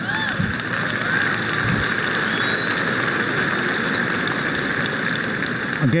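Audience applauding, a dense steady clatter of clapping, with a few whoops in the first second or so.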